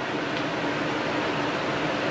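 Steady room noise: an even hiss with a faint low hum, unchanging throughout.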